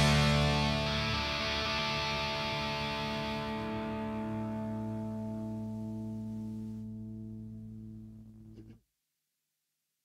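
The last chord of a song on a distorted electric guitar rings out and slowly fades. About nine seconds in it cuts off abruptly into silence.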